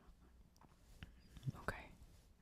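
A soft, whispered "okay" near the end, close to the microphone. Before it, quiet room tone with a few faint clicks.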